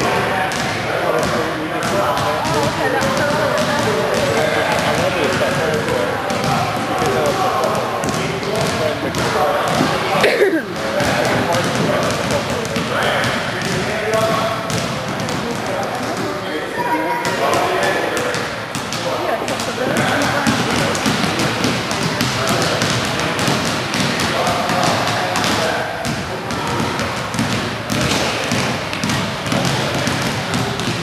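Several basketballs dribbled on a hardwood gym floor, a constant overlapping patter of bounces, under indistinct children's voices. A single falling squeak sounds about ten seconds in.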